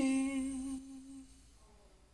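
A young man singing unaccompanied, holding the last note of a Bunun hymn as one long note that fades out about a second and a half in, leaving faint room noise.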